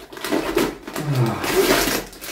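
Thin plastic vacuum-seal packaging rustling and tearing as it is pulled open by hand, loudest near the end. A short voiced grunt comes about a second in.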